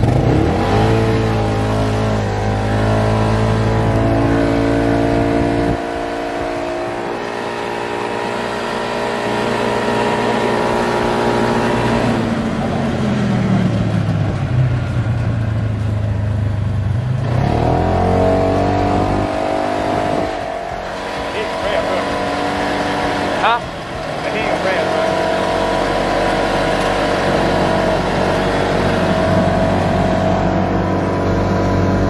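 Polaris RZR side-by-side UTV engine running hard under throttle, its pitch rising and falling with speed: it falls away from about 12 to 16 seconds in and picks up again around 17 seconds. A short sharp knock or cry comes about 23 seconds in.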